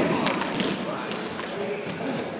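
Broomball play on ice: a few sharp clicks of brooms on the ball and ice in the first second, over a steady scuffing hiss, with players' voices in the background.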